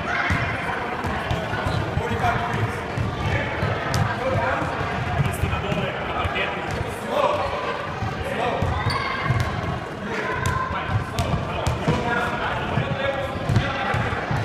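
Indistinct voices echoing in a large sports hall, with scattered thuds on the wooden floor.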